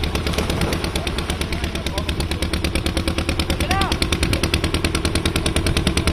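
A small engine running with a rapid, even chugging of about ten beats a second.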